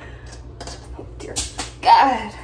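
A few short, scratchy scrubbing strokes as an animal jawbone is cleaned at a sink, over a steady low hum. Near the end comes a short voiced sound falling in pitch, louder than the scrubbing.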